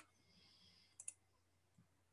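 Near silence broken by two quick computer-mouse clicks about a second in.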